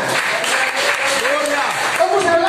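A small congregation applauding, steady clapping with a voice heard over it.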